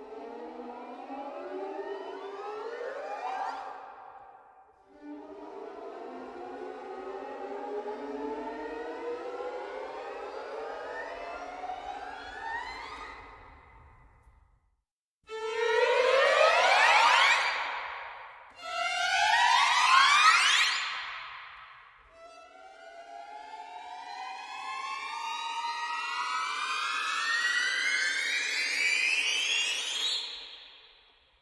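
A small first-violin section plays string glissandos from the open string up to as high as possible: five rising slides. The first two and the last are slow and steady climbs, and the two in the middle are quicker, louder sweeps.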